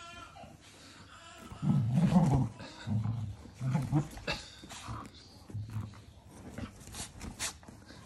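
Cocker spaniel puppy growling in play in short, low bursts, the loudest about two seconds in, with a few scuffs and clicks as it wrestles a big plush ball.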